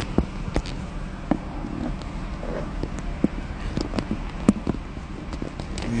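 Steady low hum of a car's running engine, with scattered sharp clicks and knocks of a phone being handled and plugged in.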